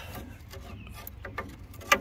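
Light metallic clicks and rubbing as a disconnected brake line is worked by hand through its rusty suspension bracket. One sharper click comes near the end.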